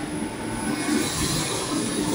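Steady machinery noise from a running rotary kiln.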